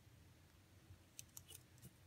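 Rabbit gnawing a pine cone, its teeth biting off the scales in a quick run of about five faint crisp crunching clicks starting about a second in.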